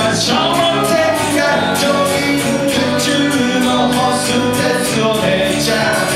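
Live band playing a song: a man singing over strummed acoustic guitars.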